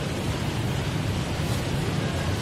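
Steady background noise: a hiss with a low hum beneath it and no distinct events.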